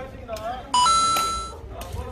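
A bright two-note ding-dong chime, the second note higher, that starts suddenly about a third of the way in and rings out within about a second. Just before it comes a short wavering voice-like sound.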